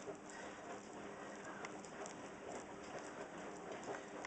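Table knife spreading chicken and stuffing sandwich filling across a slice of bread: faint, irregular soft scraping with small ticks.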